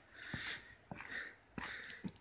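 Faint breathing and sniffs close to the microphone, three soft breaths with a few light clicks between them.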